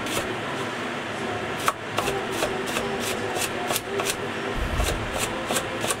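Chinese cleaver slicing garlic cloves thinly on a wooden chopping board: quick, even knocks of the blade striking the board, about five a second.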